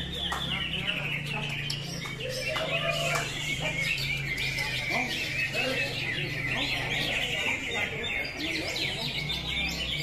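Many caged cucak hijau (green leafbirds) singing at once: a dense, unbroken chorus of overlapping high chirps and trills.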